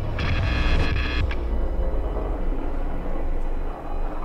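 Low rumbling drone of a horror film score, with a shrill, high chord-like tone over it for about the first second.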